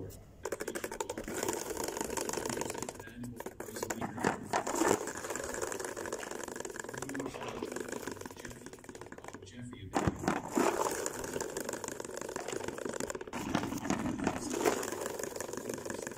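Plastic salad spinner spinning with an unbalanced basket: a fast, continuous rattle that surges into louder bangs several times as the spinner jumps.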